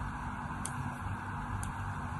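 Utility-knife blade slicing thin strips from a bar of soap: two crisp clicks about a second apart over a steady hiss.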